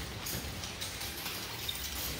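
Faint rattling and swishing of several wooden nunchaku being spun in wrist rolls, a few light clicks over a low steady background.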